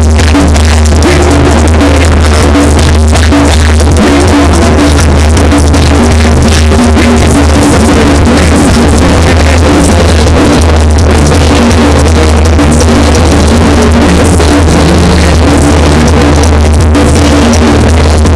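A Mexican banda playing live, loud, with a heavy, steady bass and drums; the recording is overloaded and distorted.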